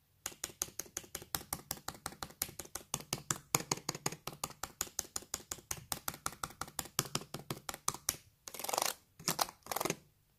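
MacBook Pro Touch Bar butterfly-switch keyboard: keys tapped in quick succession, several crisp clicks a second, to show the loud clicking that the owner blames on dust under the keys and the different sound of each row. Near the end the tapping stops and two longer scraping sounds follow.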